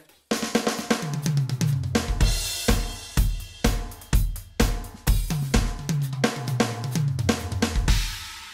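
Drumtec Diabolo electronic drum kit played through its sound module: a groove with linear fills built on a right-right-left sticking, mixing snare, toms, kick drum and hi-hat. Kick hits come in about two seconds in, and the phrase ends on a cymbal crash left ringing.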